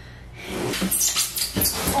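Packing material from a new iMac box squeaking and scraping harshly as it is pulled and handled, starting about half a second in and carrying on in rapid rough bursts.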